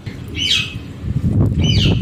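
Two high, whistled calls of black kites (cheel), each falling steeply in pitch, over wind rumbling on the microphone.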